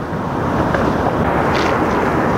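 Steady noise of street traffic, an even rumble and hiss with no clear peaks, holding at one level throughout.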